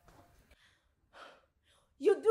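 Near silence, with one faint breath from a woman about a second in.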